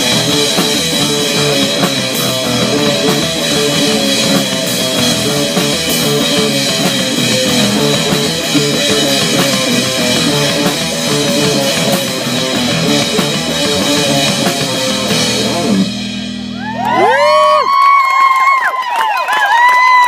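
Young rock band playing live: drum kit, distorted electric guitars and keyboard in a dense, steady song that ends about sixteen seconds in on a held low note. High tones then slide up, hold and fall away several times in the last few seconds.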